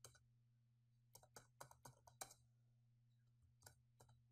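Faint computer keyboard keystrokes: a single tap, then a quick irregular run of about five keys around a second in, and one more near the end. A low steady hum runs underneath.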